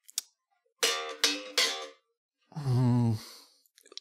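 KliraCort Jazz Bass electric bass played slap-style: three short, sharp notes about a second in, then a longer held note wavering in pitch near the end.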